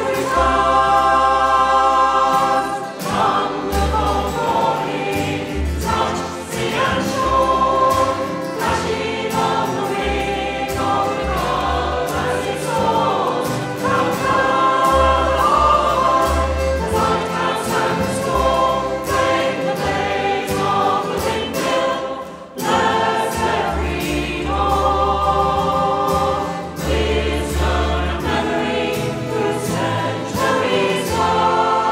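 A mixed choir singing a slow folk song in sustained chords, with low bass notes held underneath.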